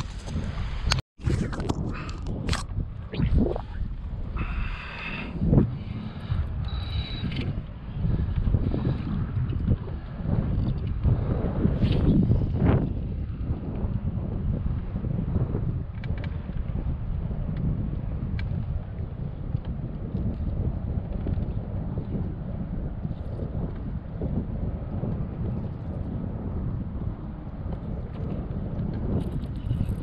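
Wind buffeting the microphone, a steady low rumble, with a few knocks and clicks in the first few seconds.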